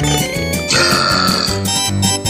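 A cartoon burp sound effect, lasting about a second and starting under a second in, over background music.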